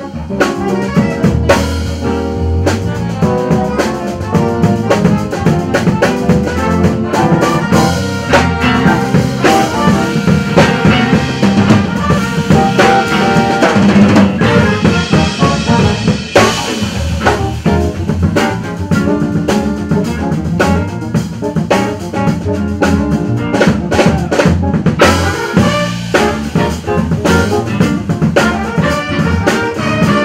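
Live jazz band playing a funk tune, with a drum kit and electric guitar to the fore over a steady groove.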